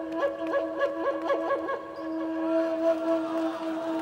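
Background music: a quick run of repeated ornamented notes over a steady drone, then long held notes from about two seconds in.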